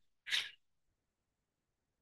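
A single short, breathy burst of noise from a person close to the microphone, a little after the start, such as a sharp breath or a stifled sneeze.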